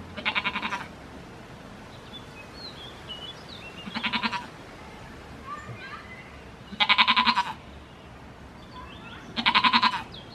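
A goat bleating four times, each bleat a short quavering call, the last two the loudest. Faint high chirps sound between the bleats.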